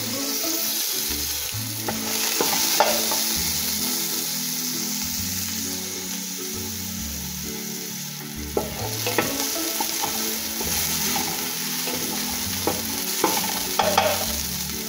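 Chopped onions sizzling steadily in hot oil in a metal pot as they are stirred and lightly sautéed, with a few sharp knocks of the stirring utensil against the pot.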